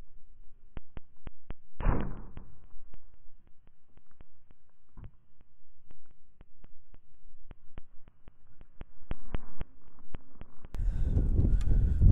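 A compound bow shot about two seconds in: one sharp snap of the string releasing the arrow, dying away quickly. Faint, even ticking runs through the quiet that follows, and near the end a gust of wind rumbles loudly on the microphone.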